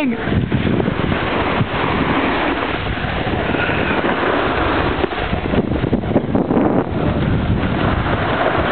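Wind buffeting the camera microphone while skiing downhill, a loud, continuous rushing noise.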